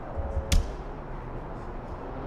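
A single sharp click about half a second in, just after a few soft low thumps, over steady low background noise.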